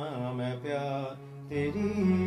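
A man singing a Hindi film song to his own electronic keyboard accompaniment, a wavering sung note that fades out after about a second. About one and a half seconds in, a new sustained keyboard chord comes in, louder than the singing.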